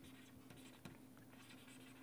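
Near silence, with a few faint ticks of a stylus writing on a tablet over a faint steady hum.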